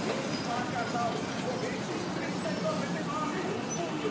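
Busy street ambience: background voices talking over a steady hum of road traffic.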